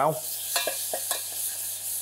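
A paste of chilli, ginger, garlic and lemongrass sizzling steadily in hot rapeseed oil in a small stainless-steel saucepan while it is sautéed to cook out its rawness. A stirring spoon ticks lightly against the pan a few times in the first second.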